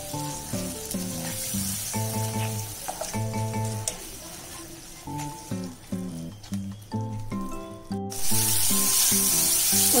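Background music with a melody over the sizzle of onion-tomato masala frying in oil and ghee in a kadai as it is stirred. After a brief dropout about eight seconds in, the sizzle is much louder.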